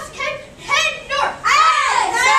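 High-pitched children's voices calling out, louder and more drawn-out in the second half.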